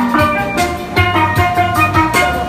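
Steel pan playing a bright, quick run of ringing melody notes over a steady low drum beat.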